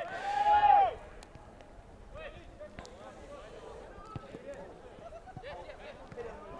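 Outdoor soccer-field voices: one loud, high-pitched shout in the first second, then faint distant calls from across the pitch, with a few soft thuds of the ball being kicked.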